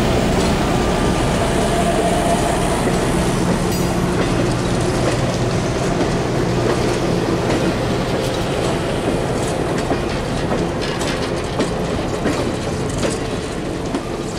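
Passenger cars of a train rolling past close by: a steady rumble of steel wheels on rail, with a low drone that fades in the first few seconds and sharp clicks of wheels passing over rail joints coming through more distinctly in the second half.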